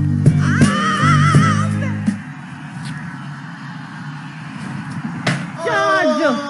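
Music with a heavy bass beat and a wavering, vibrato-like high tone over it, which stops about two seconds in. A quieter stretch follows, broken by a single sharp click, and a voice starts near the end.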